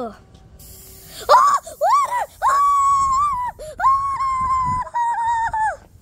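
A high-pitched voice wailing in a few drawn-out notes, starting about a second in: two short rising-and-falling cries, then two long held ones.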